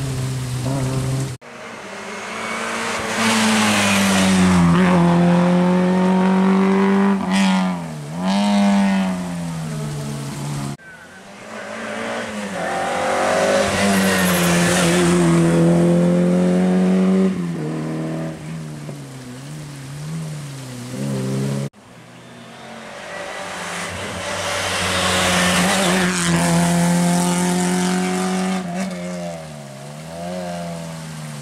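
Rally car engines at full throttle as small rally cars pass and pull away on a tarmac stage, in three passes with abrupt cuts between them. Each engine note climbs hard and drops sharply at each gear change or lift-off, swells as the car passes and then fades.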